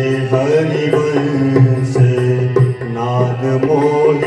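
Harmonium accompanying devotional group singing of sung verses, with regular percussion strokes keeping the beat.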